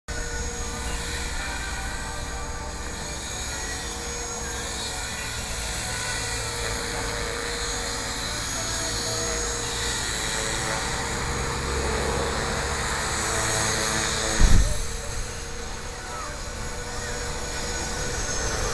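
Align T-Rex 250 electric RC helicopter in flight, its motor and rotors giving a steady whine of several high tones over low wind rumble on the microphone. One brief thump comes about three-quarters of the way through.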